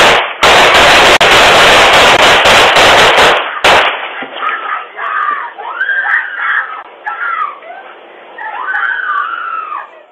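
Rapid, overlapping gunshots from several guns, so loud they overload the camera's microphone for about three and a half seconds, with one more shot about a second later. Then screaming, in several wavering cries.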